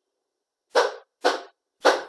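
A dog barking three times, about half a second apart, in short sharp barks.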